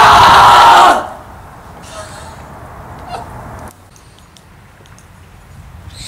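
One person's loud, long, drawn-out shout, falling slightly in pitch and cutting off about a second in. Faint background noise with a few light clicks follows.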